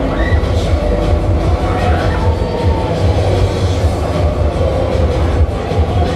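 Loud fairground ride music with a heavy bass beat, over the rumbling of a running Polyp ride.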